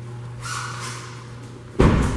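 A car door, the rear side door of a 2013 Mitsubishi Outlander, shut with one loud thud near the end, after about a second of quieter rustling movement.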